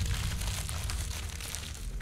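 Paper bag crumpled and crushed between the hands, with the hollow plastic bottle-top shell inside it giving way: a dense, steady crinkling and crackling.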